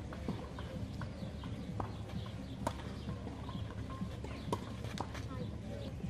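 Tennis rally on a clay court: a few sharp pops of the ball off strings and bounces, spaced irregularly, the loudest about halfway through.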